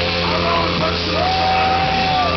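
Celtic punk band playing live through a PA with amplified electric guitars, the lead singer shouting into the microphone. In the second half he holds one long yelled note.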